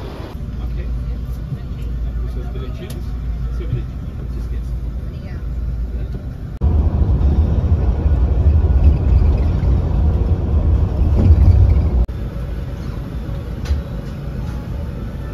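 Low engine and road rumble heard from inside a coach, in separate edited shots. The rumble is much louder and heavier while the coach runs at speed on the motorway, about seven to twelve seconds in. It is lighter at the start and near the end, when the coach is at the bus stations.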